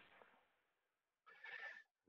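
Near silence, broken by one faint, short sound about one and a half seconds in.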